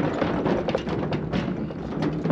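Mobility scooter rolling over the plank deck of a wooden footbridge, its wheels making irregular knocks and rattles on the boards over a low running rumble. The bridge is rough.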